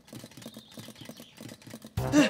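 Clockwork toy train clacking, a rapid, even run of light clicks.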